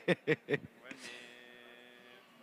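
A man's laughter trailing off, then about a second in a steady electrical hum with a thin high whine sets in and slowly fades.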